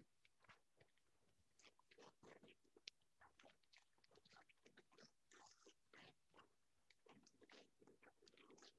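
Faint crackling and rustling of a large sheet of flipchart paper being torn apart by hand, the tear going unevenly in many short fits, with one sharper tick about three seconds in.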